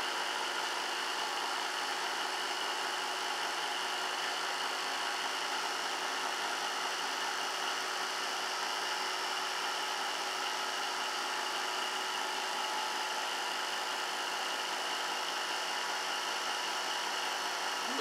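Homemade magnetic motor with magnet-studded rotors and electronically switched drive coils running steadily at about 3,200–3,400 rpm: an even whir with a high, steady whine.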